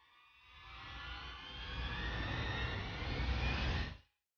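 Cinematic riser sound effect for a title card: a low rumble and rushing noise swell louder over about three seconds, with thin tones gliding upward, then cut off abruptly.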